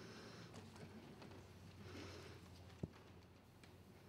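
Near silence: room tone with a faint steady low hum, broken by one sharp click about three seconds in.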